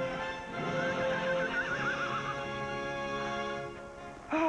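A horse whinnies once, a wavering call that falls in pitch, about a second in, over film-score music of sustained held chords.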